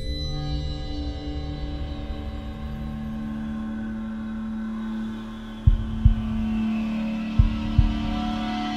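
Tense dramatic underscore of sustained held tones. About halfway through, a low double thump sets in and repeats like a heartbeat, roughly every second and a half.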